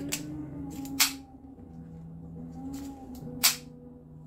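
Spring-loaded clip of a Bower HD microphone kit snapping shut twice, two sharp clicks about two and a half seconds apart.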